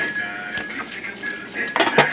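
Domino tiles clacking on a wooden table: a light knock at the start and a sharp, louder knock near the end, with background music.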